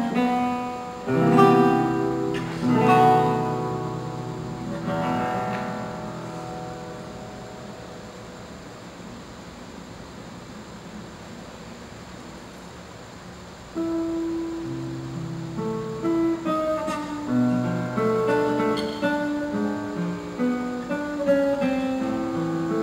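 Solo nylon-string classical guitar. Loud chords sound about one and three seconds in and are left to ring and fade for several seconds. Picked melodic playing resumes about two-thirds of the way through.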